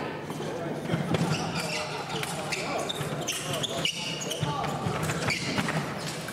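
Indistinct chatter of many voices in a large sports hall, with scattered thuds and clicks.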